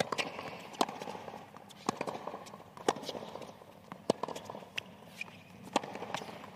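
Tennis rally on a hard court: tennis balls struck by rackets and bouncing, a sharp knock about once a second.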